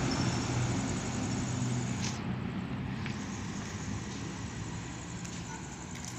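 Wheels rolling over concrete pavement: a steady rumble that slowly fades, with a few light clicks.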